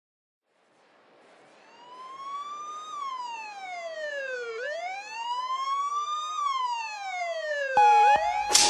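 A wailing siren sample opens a ragga jungle track, fading in from silence about a second in and slowly rising and falling in pitch twice. Just before the end a steady tone and a sharp hit come in as the track proper begins.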